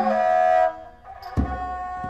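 Thai so sam sai, a three-string bowed fiddle, playing a slow melody in long held notes. There is a low thump just after halfway, as a new note starts.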